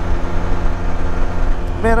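Can-Am Spyder F3's engine running at a steady cruise, one even drone with no change in pitch, under heavy low wind rumble on the microphone.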